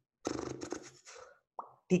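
A man's brief throaty vocal sound with a rapid crackly pulse, then a short click, just before he starts speaking again.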